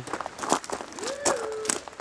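Footsteps crunching through dry fallen leaves while walking. About a second in, a brief weird call rises and then holds one pitch.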